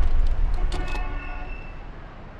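An end-card sound-effect sting: a deep boom fading out over about three seconds, with a few sharp clicks near the start and a brief thin horn-like tone about a second in.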